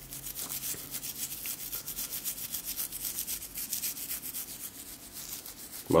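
A toothbrush scrubbed quickly back and forth over a gold grill with toothpaste, a scratchy rubbing of short strokes several times a second.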